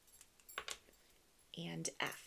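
Wooden letter tiles clicking sharply against a tabletop as they are handled and set in a row, a couple of clicks about half a second in. Near the end a woman briefly says a single letter.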